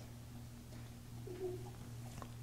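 A pause in speech with a steady low electrical hum. About one and a half seconds in there is a faint, brief cooing sound that falls slightly in pitch.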